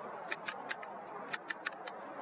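Seven small, sharp clicks in two quick runs, three and then four, from the controls of a handheld camera being adjusted while it films, over a faint steady hiss.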